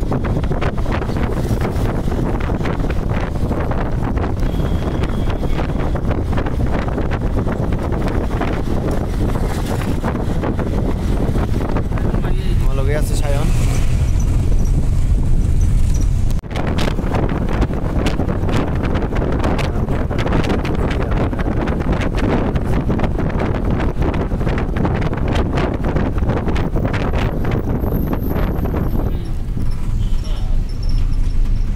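Steady road and engine rumble inside a moving passenger van, with wind buffeting the microphone.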